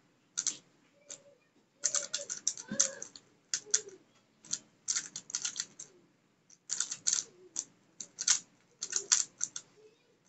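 Plastic clicking and clacking of an MF3RS stickerless 3x3 speed cube being turned by hand, in short bursts of quick turns separated by brief pauses.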